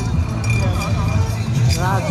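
People talking close by, with background music and a steady low hum underneath.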